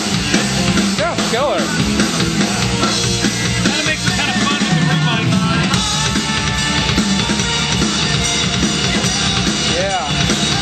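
A recorded rock drum kit track, bass drum and snare, played back loudly over studio control-room monitors, including the room mics.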